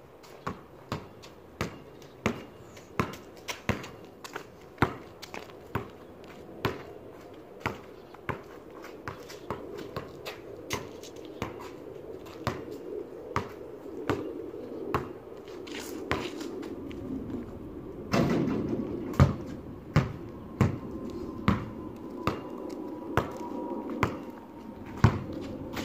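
Basketball dribbled on a concrete driveway, a steady run of sharp bounces about one and a half a second. A low rushing noise comes in about three-quarters of the way through.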